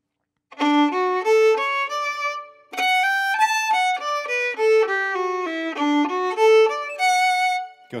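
Solo fiddle, bowed, playing a D major arpeggio figure in a reel melody. The notes start about half a second in, with a short break after the first phrase, then run on to near the end.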